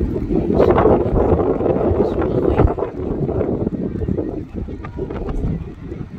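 Wind buffeting the phone's microphone in gusts, a loud, low, rushing noise that is strongest in the first three seconds and eases off later.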